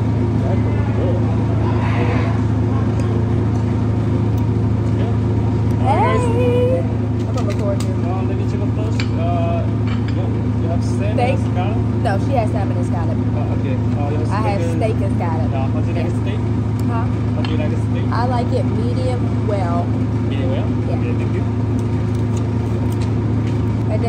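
Steady low machine hum, like a large ventilation fan, with other diners' voices chattering in the background.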